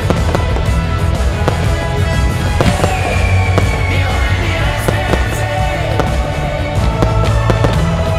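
Fireworks display: many sharp bangs and pops from bursting shells, over loud music with a steady heavy bass.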